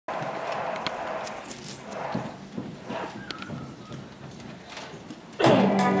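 Faint audience murmur and rustling in a hall, with scattered small knocks, until the dance's recorded music starts suddenly, loud and with guitar, about five and a half seconds in.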